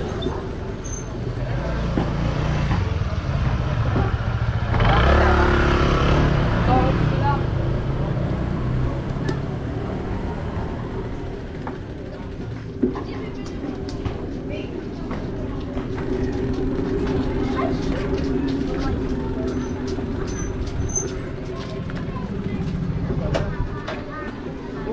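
Street ambience in a narrow alley: motorcycle engines running, one passing close and loud about five seconds in, with people's voices in the background.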